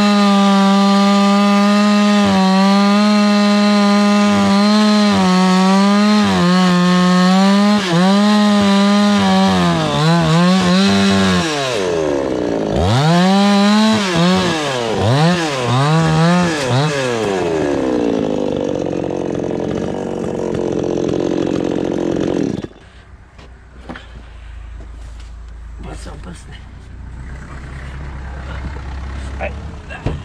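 Two-stroke chainsaw running at high revs. Its pitch then dips and recovers again and again under the throttle and the cut, sinks, and cuts off abruptly about three-quarters of the way through. After it stops, a low engine rumble and a few knocks remain.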